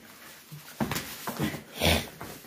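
Heavy breathing and scuffling of two people grappling on foam floor mats, with a louder burst near the end.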